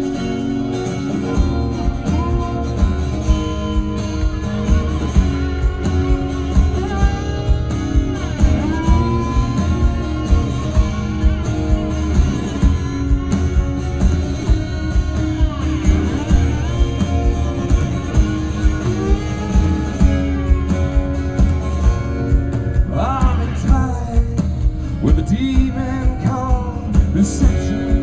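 A live rock band plays a song's instrumental opening on acoustic guitar, electric guitar and drums. The drums come in about a second in and keep a steady beat.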